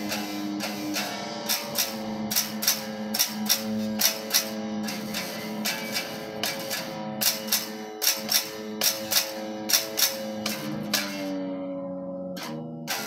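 Electric guitar being played with a pick: sustained, ringing notes cut by sharp picked strokes about three a second, with the notes shifting near the end.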